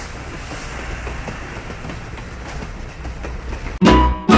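Battery-powered TrackMaster Salty toy diesel shunter running along plastic track: a steady motor whir and rumble with faint clicking of the wheels over the track. Loud music cuts in just before the end.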